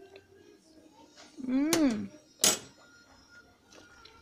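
A short wordless 'mmm'-like vocal sound from a person tasting food, rising then falling in pitch about one and a half seconds in, followed about a second later by a single sharp click.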